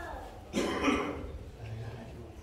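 A man coughs once into his hand, a short harsh cough about half a second in.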